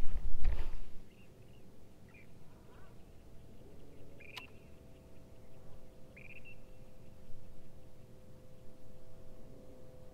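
A low rumble in the first second, then a quiet stretch with a faint steady hum and a few short, high bird calls. A single sharp click comes about four seconds in.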